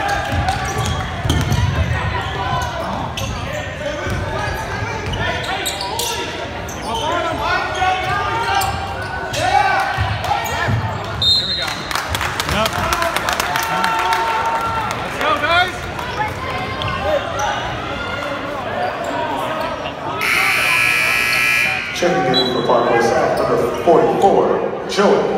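A basketball dribbling and bouncing on a hardwood gym floor among the voices of players and spectators, echoing in a large gym. About twenty seconds in comes a loud horn blast lasting about two seconds.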